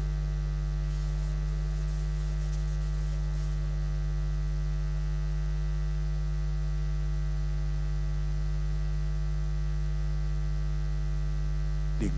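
Steady electrical mains hum on the audio line: an unchanging low drone with a stack of evenly spaced overtones.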